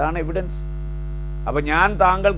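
A steady, low electrical hum runs under the whole stretch, with a man's voice briefly at the start and again near the end.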